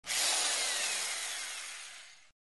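A whooshing hiss sound effect for an animated logo intro. It starts suddenly with faint falling whistles and fades away over about two seconds.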